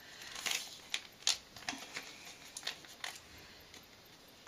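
Scissors snipping a small diagonal notch into the taped spine of a clear plastic insert: a few short, sharp snips, the loudest about a second in, with light crinkling of the plastic between them.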